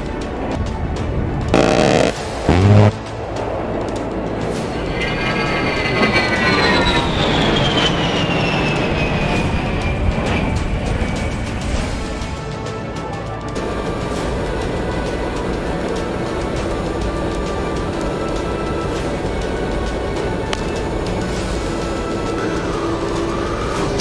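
An A-10 Thunderbolt II's twin TF34 turbofan engines as the jet flies past, their whine falling steadily in pitch over several seconds. Two loud short bursts come about two seconds in.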